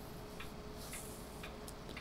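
Faint, regular ticking at about two ticks a second, over a low steady hum of room tone.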